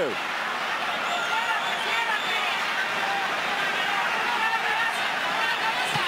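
Boxing arena crowd: a steady hubbub of many voices at once.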